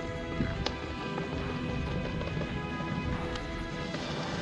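Background music with sustained chords and a few sharp percussion hits.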